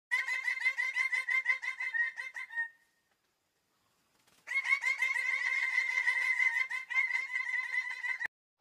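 Birds-of-paradise calling in quick runs of repeated ringing notes, about six a second. The calls break off after about two and a half seconds and start again a second and a half later as a denser chorus.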